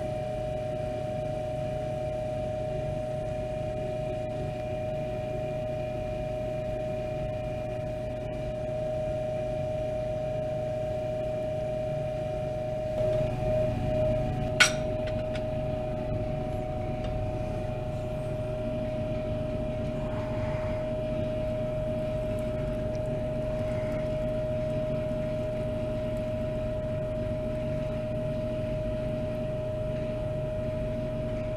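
Steady electric motor hum with a constant pitched whine, unchanged throughout. A single sharp glass clink about halfway through.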